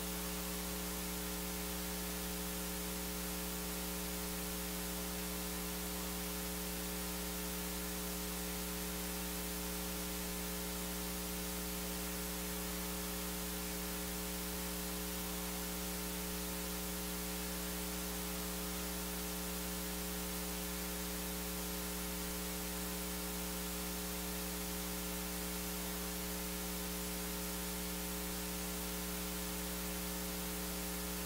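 Steady electrical mains hum with a layer of hiss, unchanging throughout, with no singing or speech coming through.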